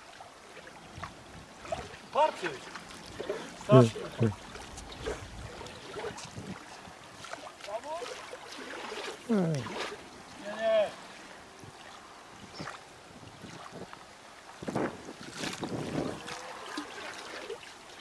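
Faint, indistinct voices of people talking some distance away, in short scattered phrases, over a light background hiss.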